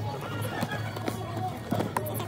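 Background music with voices in a public space, and a few sharp cardboard clicks near the end as a paper meal box is handled and opened.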